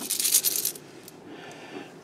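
Loose pennies clinking and jingling as a hand digs into a plastic bag of thousands of coins and scoops up a handful. The clinking stops a little under a second in, leaving only a faint rustle.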